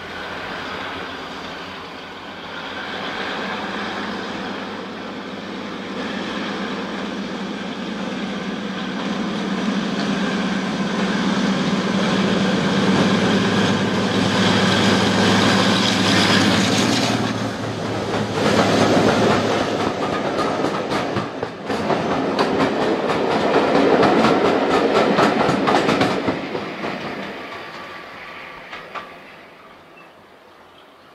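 A heritage diesel locomotive approaches and passes, its engine a steady drone that grows louder for about the first seventeen seconds. The coaches then run past with a rapid, regular clickety-clack of wheels over rail joints, which fades away near the end.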